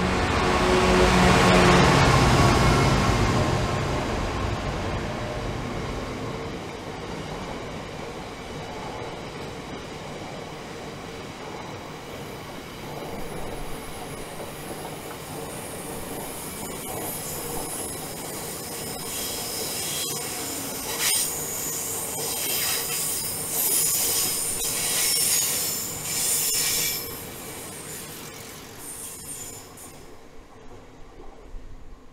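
A GB Railfreight Class 66 diesel locomotive passes, its two-stroke engine loudest in the first few seconds. A long rake of cement hopper wagons then rolls by, with bursts of high-pitched wheel squeal in the second half, and the sound fades away near the end.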